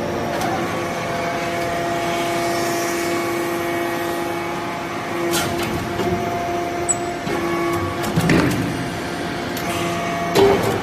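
Vertical hydraulic metal-chip briquetting press running: the steady hum of its hydraulic pump unit, with a few sharp clicks and knocks as the press cycles, about halfway through and again near the end.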